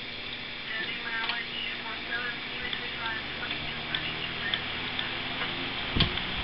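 Westinghouse 16SD3 electric desk fan running on its second speed, with the steady rush of its bakelite blades, a motor hum and faint ticks. A sharp click comes at the very end, as the speed switch is turned to third.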